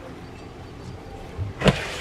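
Ski jumper's skis landing on the plastic-matted summer landing slope: a softer knock, then a sharp slap about a second and a half in.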